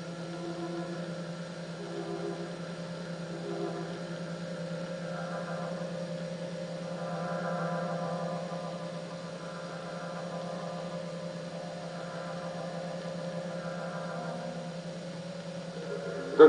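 Steady low hum with faint sustained tones that swell and fade every few seconds.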